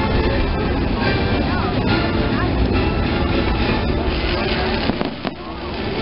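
Nighttime theme-park fireworks show: loud show music over the park speakers, with fireworks bursts among it and a sharp crack just after five seconds, following a brief drop in level.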